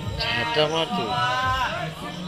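A voice chanting in short, drawn-out phrases with a wavering pitch.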